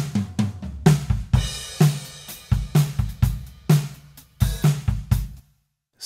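Playback of a multitracked live acoustic drum kit recording: kick and snare hits in a steady beat of about two a second, with hi-hat and cymbals ringing over them. The playback stops about five and a half seconds in.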